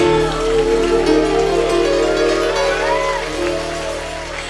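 Live band holding a long sustained chord at the close of a song, low bass and keyboard notes ringing steadily under short rising-and-falling melodic runs, easing off slightly toward the end.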